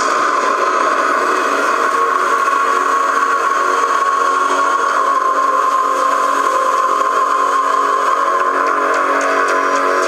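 A loud, steady sound-effect drone made of many held tones with a hiss above them, holding unchanged throughout.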